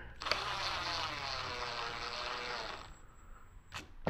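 Cordless drill driving a stainless #10 screw into the plastic mounting track, a steady motor whir lasting about two and a half seconds that stops short once the screw is snug.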